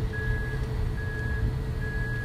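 An electronic warning beep repeating about once every 0.85 s, each beep short and high-pitched, over a steady lower hum and low rumble.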